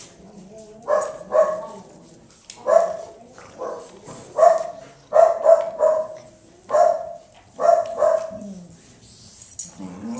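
Dog barking repeatedly in play, about a dozen short barks, often in quick pairs.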